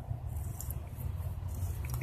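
Thread tap being turned by hand with a T-handle through a cam tower bolt hole in a cylinder head, cutting new threads for a Helicoil insert: only faint clicks and rustles over a steady low rumble.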